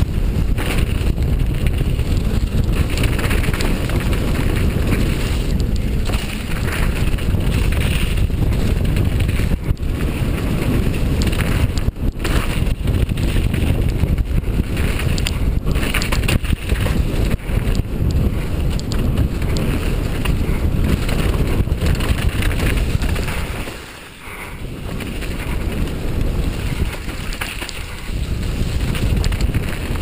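Wind buffeting a helmet-mounted camera's microphone on a fast downhill mountain-bike descent, mixed with tyre and frame noise from the dirt trail and occasional sharp knocks over bumps. The noise drops briefly about three-quarters of the way through, then builds again.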